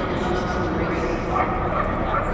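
A small dog yipping a few times over the steady murmur of a crowd talking in a large hall.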